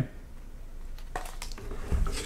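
Faint handling sounds: a few light clicks and knocks as a braille writing frame is lifted off the paper on a braille board and set down.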